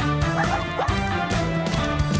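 Background music with a steady beat, over which a cartoon puppy gives a few short yipping barks about half a second in.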